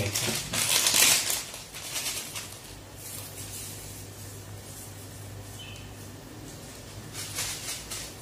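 Foil packet of dried fenugreek leaves (kasuri methi) crinkling as it is handled, and the dry leaves rustling as they are crumbled by hand over a pot of rice. The rustling is loudest in the first second or so, fades, and comes back briefly near the end over a faint steady hum.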